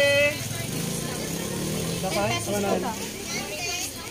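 Open-air market ambience: several voices talking and calling at once, a high-pitched voice loudest right at the start, over the low steady running of an engine.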